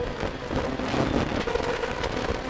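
Renault Clio R3 rally car's 2.0-litre four-cylinder engine at full throttle, heard from inside the cabin: a steady high engine note under dense road and wind noise.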